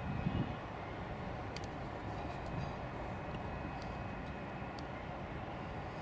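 Steady outdoor background noise: a low rumble with a hiss over it and a faint, thin, high steady tone, with a brief low buffeting swell right at the start.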